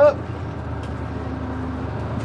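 Bus engine idling with a steady low rumble.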